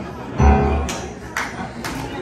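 A Yamaha grand piano struck with a full chord about half a second in, its deep bass ringing and fading. Sharp percussive beats then come at a steady pulse of about two a second.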